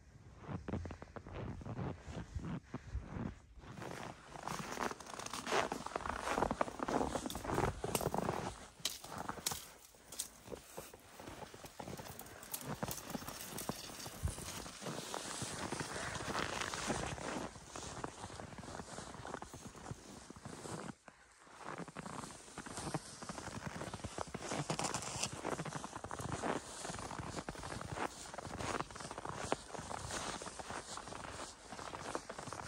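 Footsteps in deep snow, a steady walking rhythm of repeated crunching steps, with a brief break about two-thirds of the way through.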